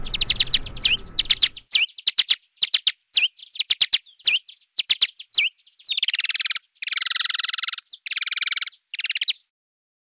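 Mexican free-tailed bat's courtship song, played back slowed eight times: a quick run of short chirps that sweep down and up in pitch, then four longer buzzing phrases, ending about nine seconds in.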